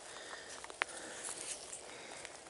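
Quiet outdoor background with faint rustling and handling noise, and one light click a little under a second in.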